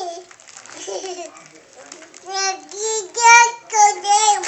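A toddler girl's high-pitched, singsong vocalizing without clear words: a few drawn-out syllables in the second half, the loudest near the end.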